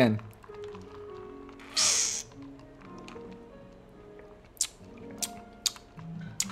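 A sip through a drinking straw from a plastic cup of iced drink: one short slurp about two seconds in, then a few small clicks near the end. Soft jazz plays underneath.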